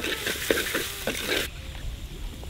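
Shredded cabbage sizzling as it fries in oil in a clay pot, stirred with a wooden spatula that scrapes and knocks against the pot. The sizzle cuts off suddenly about one and a half seconds in.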